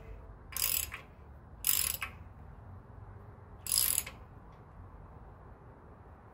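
Socket ratchet clicking in three short strokes, about half a second, two seconds and four seconds in, as it turns a stud installer to run a 3/8-inch stud down into the engine block until it seats snug.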